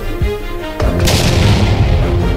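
Cinematic intro music with sustained tones, punctuated by a deep boom hit a little under a second in, followed by a bright swishing rush.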